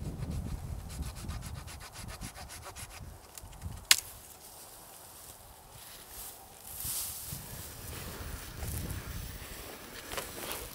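Hand saw cutting a cedar branch: a fast, even rasping for about three seconds, then a single sharp crack near four seconds. Quieter rustling of branches follows.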